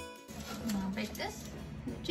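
Background guitar music cutting off right at the start, followed by quiet kitchen room sound with a brief, faint voice.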